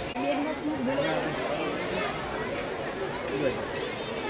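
A crowd of children chattering, with many voices overlapping at once.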